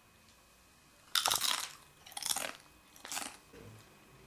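Crunching of tortilla chips being bitten and chewed: three short crunches about a second apart, the first the loudest.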